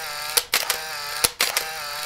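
Camera shutter sound effect repeated three times in quick succession: each round is a click, a short motorised whir of film winding, and another click.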